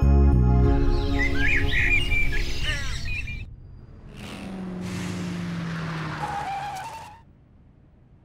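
Birds chirping, then a Toyota Innova MPV driving up and pulling to a stop, its engine note slowly falling as it slows, ending about seven seconds in.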